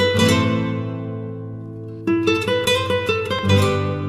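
Background music on acoustic guitar: a strummed chord rings out and fades, then a quicker run of strums starts about two seconds in.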